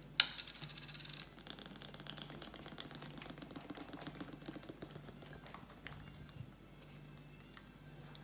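Chocolate protein shake poured from a carton onto ice cubes in a plastic blender cup. A sharp click and a brief rattle open it, then faint, fine crackling and clicking as the liquid runs over the ice, fading away.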